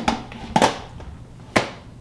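The lid of a Presto digital electric pressure canner being set on and twisted to lock: three sharp hard clunks, the last about a second and a half in.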